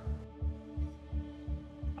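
Background music: a low bass pulse beating a little under three times a second under a held synth chord.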